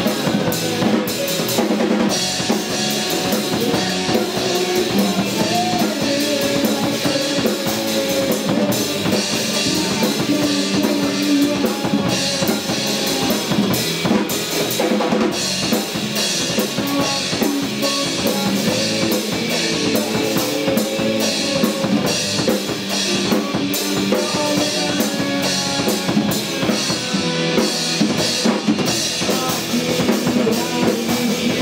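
Rock band playing live: a drum kit keeping a steady beat under electric guitar, bass guitar and keyboard.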